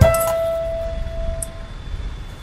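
A last piano note is struck and rings out, fading over about a second and a half, above a steady low hum of street traffic.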